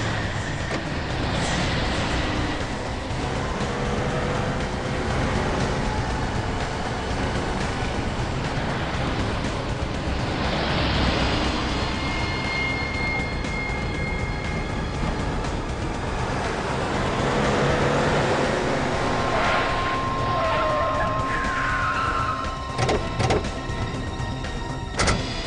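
Vehicles on the move in a road chase, steady traffic and engine noise with several swelling whooshes, under dramatic background music. A few sharp knocks near the end.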